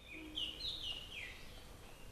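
Birds chirping: a few short high calls, some dropping in pitch, in the first second and a half, over faint outdoor background noise.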